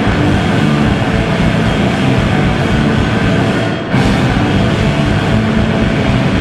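Live rock band playing loud, with guitars, bass and drums. The sound drops out for a moment just under four seconds in, then the full band comes straight back in.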